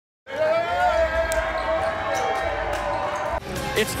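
A basketball bouncing a few times, sharp knocks over a steady held tone that stops shortly before the end.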